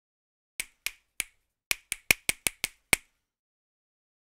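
A snap-like one-shot percussion sample from EZdrummer 2 drum software, triggered about ten times at an uneven pace and coming faster after the first couple of seconds. Each hit is short and sharp with almost no tail.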